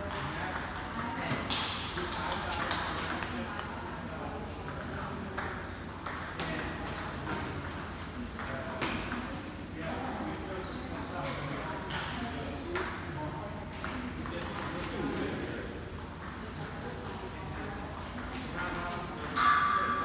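Table tennis ball clicking off paddles and the table during play, over background voices, with a louder, sharper hit about a second before the end.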